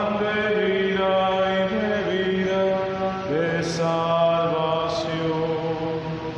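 Slow sung hymn with long held notes, each voice-like note sliding up into the next, and two sibilant 's' sounds of the sung words in the second half.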